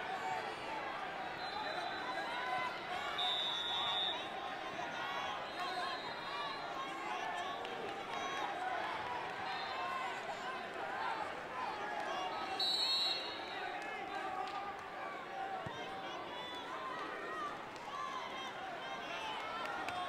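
Crowd babble in a large arena: many overlapping voices of spectators and coaches around the wrestling mats, at a steady moderate level.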